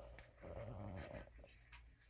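A brief, low, wordless voice sound lasting under a second, with a few faint clicks of handling around it.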